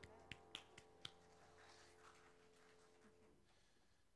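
Near silence: the last held piano chord of a song dying away, gone about three seconds in, with four faint sharp clicks in the first second.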